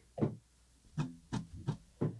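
A short sound effect played from a studio soundboard button: four brief pitched blips, the last three evenly spaced about a third of a second apart.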